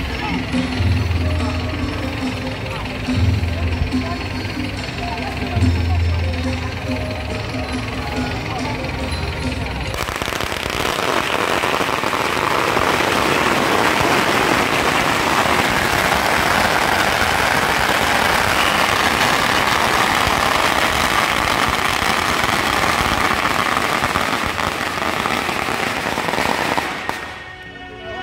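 A long string of firecrackers set off, a dense, rapid, unbroken crackle that starts suddenly about ten seconds in and stops about a second before the end. Before it, crowd voices and some music.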